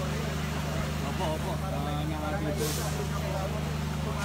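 Indistinct voices over a steady low hum from an idling vehicle engine, with a short hiss about two and a half seconds in.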